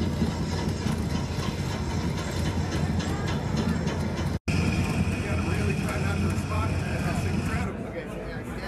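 Loud, continuous low rumbling and clatter, like a train, from a VR roller-coaster ride's soundtrack played through large subwoofers, with voices behind it. The sound cuts out for an instant about four and a half seconds in.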